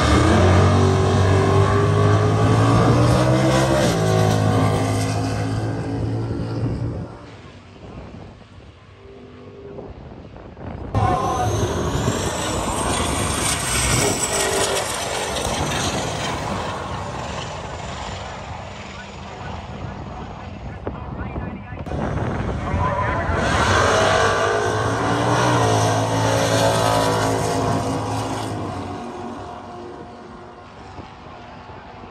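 Drag racing cars accelerating hard down the strip, their engines climbing in pitch as they pull away and fade, in three separate passes cut one after another. A high whine rises during the middle pass.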